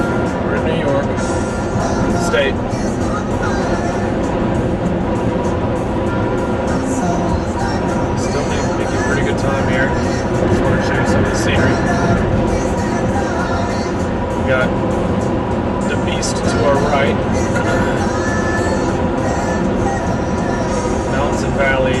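Music with a singing voice playing on the car stereo, heard inside the cabin over steady road and engine noise from the moving car.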